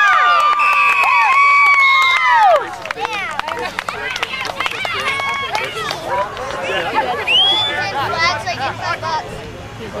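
Sideline crowd of spectators shouting loudly for about the first two and a half seconds, then settling into a quieter babble of many voices.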